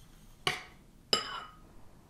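A metal spoon clinking twice against crockery, about half a second and a second in, each with a brief ring.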